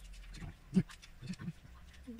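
A man chuckling in a few short, breathy laughs.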